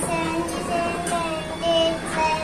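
A young boy's voice chanting in a sing-song tune, with short held notes one after another.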